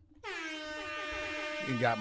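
One long, steady, horn-like tone lasting about a second and a half, dipping slightly in pitch as it starts and then holding level.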